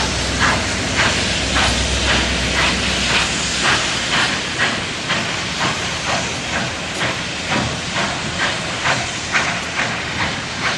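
Union Pacific 844, a 4-8-4 steam locomotive, working slowly with steady exhaust chuffs about two a second over a continuous hiss of steam.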